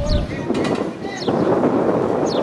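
Wind buffeting the microphone, with a short high falling chirp repeated about once a second.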